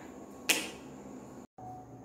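A single sharp click about half a second in, over quiet room tone, followed about a second later by a brief dead-silent dropout.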